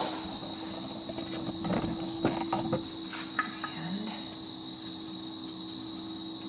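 Faint rustles and light taps of a small brush sweeping loose flocking fibres off a wooden sign, over a steady high-pitched whine and low hum of shop equipment.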